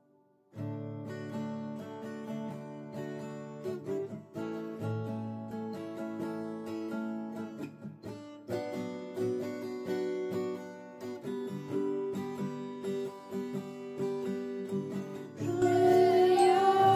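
Acoustic guitar playing an instrumental introduction, starting about half a second in and getting louder near the end.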